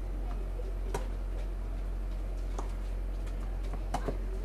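Tennis ball struck back and forth in a rally: three sharp racquet hits about a second and a half apart, the last one loudest, over a steady low hum.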